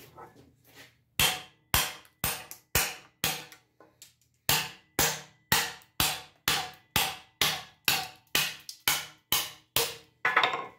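A hammer striking the spine of a steel knife blade over and over, driving it into the edge of a wooden board: about two sharp blows a second, each dying away quickly, with a short pause just before the midpoint.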